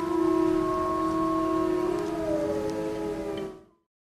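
Dark, atmospheric intro music of held tones with a few slow gliding notes over a rain-like hiss. It fades out quickly near the end into silence.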